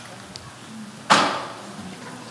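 Quiet room tone, then about a second in a single short, sudden whoosh of breath on a headset microphone that fades within a second.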